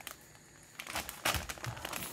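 Plastic film of a Yum Yum instant noodle packet crinkling in irregular bursts as hands grip and pull at it to open it, starting about a second in.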